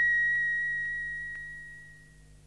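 A single high, pure electronic tone, the held final note of a channel-ident jingle, fading out steadily until it is barely audible by the end.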